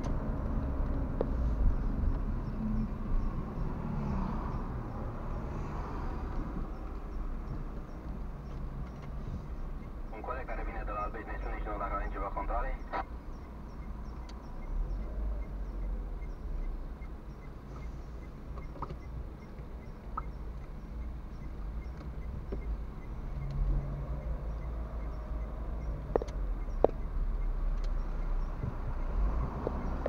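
Car driving in city traffic, heard from inside the cabin: a steady low engine and road rumble.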